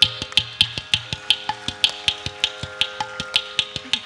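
Ghatam (South Indian clay-pot drum) played with the hands in a quick, even run of sharp, bright strokes, about seven a second.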